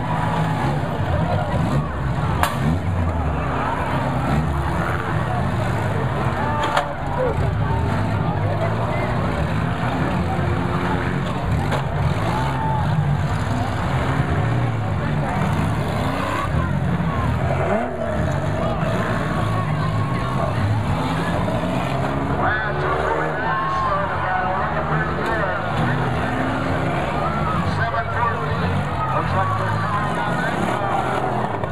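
Several demolition-derby cars run and rev their engines together in a steady, dense rumble, with a crowd's voices over it. Two sharp impacts of cars hitting each other come about two and a half and seven seconds in.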